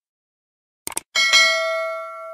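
Sound effects for a subscribe-button animation: a quick double mouse click about a second in, then a notification bell ding struck twice in quick succession that rings on and fades.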